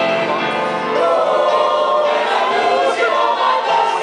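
A small mixed jazz choir of men and women singing together into handheld microphones, several voices overlapping at once.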